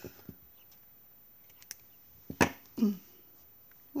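Steel scissors handled on a cloth-covered table: a few light clicks, then one sharp click about two and a half seconds in.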